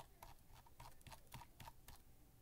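Computer mouse scroll wheel ticking through its notches: a string of faint, irregular clicks as a package list is scrolled.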